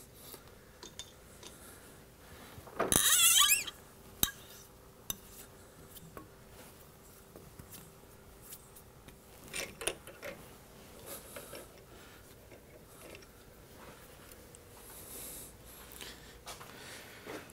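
Hand tapping at a metal lathe: a half-inch bottoming tap in a tap wrench being handled after reaching the bottom of the hole, giving scattered faint metallic clicks and clinks. A louder burst of noise lasting under a second comes about three seconds in.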